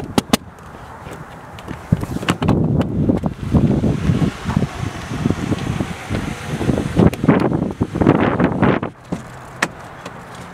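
A car door being worked at by hand: the handle is yanked and the door and window are rattled and knocked in a run of irregular clunks from about two seconds in until near the end, after a few sharp clicks at the start.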